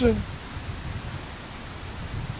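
Wind on the microphone: a steady low rumble under a soft hiss, following the last syllable of a spoken word at the very start.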